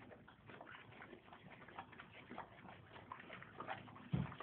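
A horse smacking its lips as it eats: faint, irregular clicks, a few each second.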